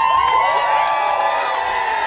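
Bar crowd cheering and whooping as a rock song ends, with a steady high tone ringing under the voices.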